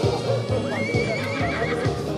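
A horse whinnying once, a wavering call of about a second beginning a little way in, over background music with a steady beat.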